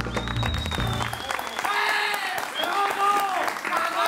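A short musical sting ends about a second in. It plays over applause that runs throughout, with voices calling out over the clapping in the second half.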